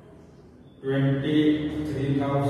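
A man's voice comes in about a second in, loud and drawn out on a steady pitch, like a held, chant-like syllable.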